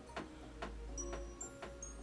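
Crib mobile's music box playing a soft tinkling tune over a steady tick about twice a second, with high chime notes entering about halfway through.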